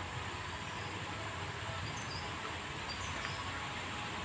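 Steady, quiet background noise with a faint low hum, and a few brief, faint high-pitched chirps around the middle.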